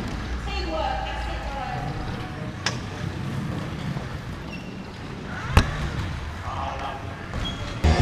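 Two sharp knocks from the large powerchair football ball being struck, echoing in a sports hall: a lighter one about two and a half seconds in and a louder one about five and a half seconds in. Faint distant voices between.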